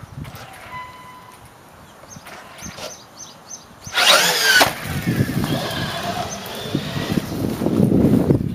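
Electric RC truck's motor whining up sharply in pitch as it launches hard about four seconds in, followed by continuous motor and tyre noise as it drives away.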